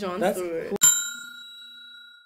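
A single bright bell-like ding sound effect struck about a second in, ringing on with a slow fade.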